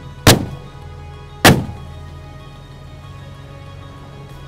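Background music with two sharp, loud bangs a little over a second apart, each with a short fading tail.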